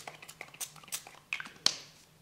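Short spritzes from a small pump spray bottle of ink among light clicks of handling. The two loudest spritzes come about a second and a half in, close together, the second fading out briefly.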